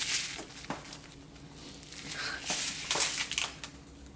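Crinkling of candy packets being handled, in short irregular bursts, busiest about two and a half to three seconds in.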